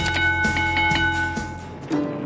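Background music with a bright bell-like chime, a notification-bell sound effect, ringing over it and fading out over about a second and a half.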